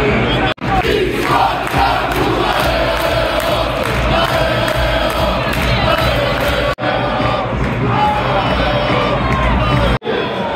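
Football stadium crowd chanting together, a mass of voices singing in unison with cheering. The sound cuts out for an instant twice, about half a second in and near the seven-second mark.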